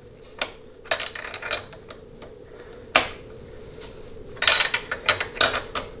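Steel hand tools, a combination wrench and a socket on a ratchet, clinking against the lock nut and adjustment screw on a Ford C6 transmission case as the wrench is fitted to the nut. The sound is a scatter of light metallic clinks, with one sharper click about halfway through and a quick run of clinks near the end.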